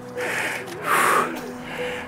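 A man panting heavily, out of breath after running: two loud breaths, the second and louder one about a second in.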